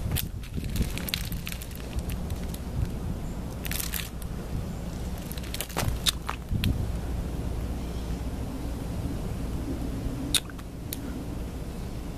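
A lighter being struck and cannabis crackling as it burns during a hit, heard as scattered sharp clicks and crackles in small clusters over a steady low outdoor rumble.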